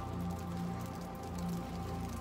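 Meltwater dripping from icicles on an ice-coated tree, many small scattered drips pattering like light rain. Steady low tones, like background music, run underneath.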